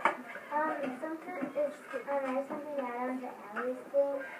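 Speech only: a child talking, with no other sound standing out.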